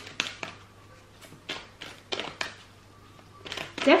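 A deck of tarot cards being shuffled by hand: a string of soft, irregular card clicks and slaps, about a dozen in four seconds.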